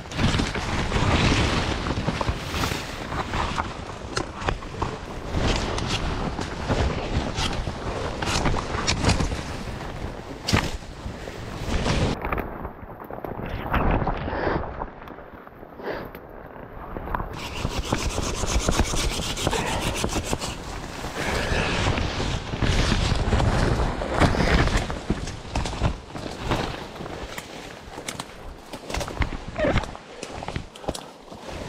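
Willow and alder branches scraping and rubbing against the camera and clothing, with leaves rustling and twigs cracking, as someone forces a way through dense brush. Many sharp cracks throughout; a muffled stretch in the middle.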